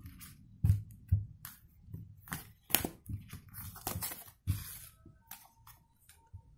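A deck of Druid tarot cards being handled and a card drawn: a string of irregular dry clicks, taps and rustles of card stock sliding against card stock.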